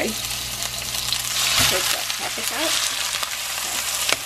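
Raw ground pork and garlic sizzling in a hot frying pan as the meat goes in and is stirred with a metal spoon. The sizzle is steady, growing louder about a second and a half in.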